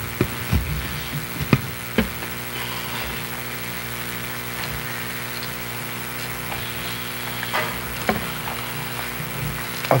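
Hearing-room tone picked up by open microphones: a steady hiss with a low electrical hum, broken by a few short knocks and clicks in the first two seconds and again about eight seconds in.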